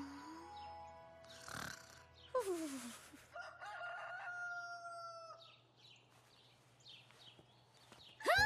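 A rooster crows once, the dawn wake-up call: a sharp falling first note, then a long held, slightly falling call. It plays over soft music, with a brief swish about a second and a half before it.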